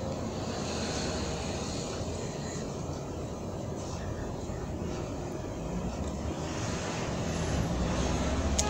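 A steady low background rumble, like a distant running engine, with no distinct events.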